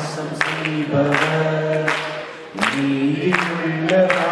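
Voices singing a slow worship song without instruments, in long held notes.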